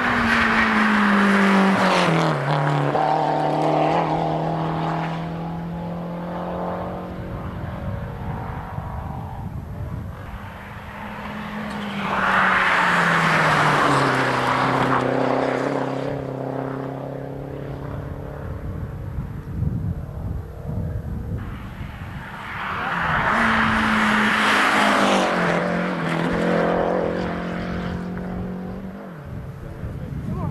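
Rally cars racing past one after another on a tarmac stage, three passes about ten seconds apart. Each engine note drops in pitch as the car goes by, then holds steady as it pulls away.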